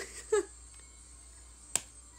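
A young woman's short laugh, then a single sharp hand clap near the end.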